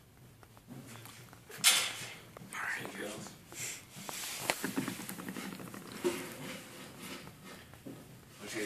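Quiet, hushed voices of a small group, with one short sharp tap a little under two seconds in.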